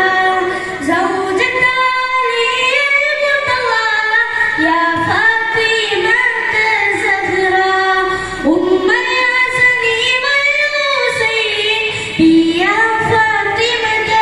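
A boy singing a nabidina song, a devotional song for the Prophet's birthday, into a microphone. His high voice is amplified, and the melody moves between long held notes that glide up and down.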